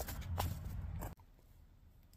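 Camera handling noise: a low rumble with a couple of light knocks while the camera is moved, cut off abruptly about a second in, followed by near silence.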